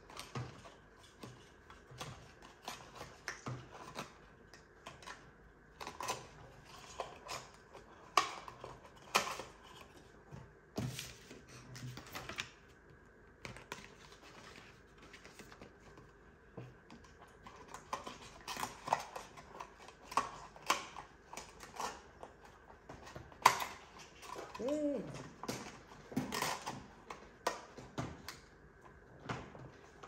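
A small cardboard gift box being opened and handled by hand: irregular clicks, taps and crinkles of card and paper, some sharper than others.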